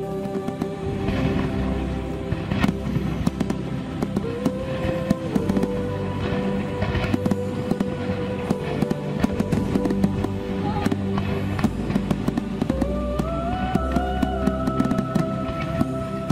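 Fireworks going off: a dense, irregular run of bangs and crackles starting about a second in, over background music with long held notes.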